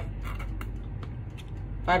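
Faint kitchen handling and scraping sounds over a steady low hum, with a woman starting to speak near the end.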